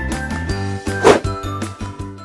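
Light background music with bright, chiming bell-like notes over a regular beat. There is a short swish of noise about a second in.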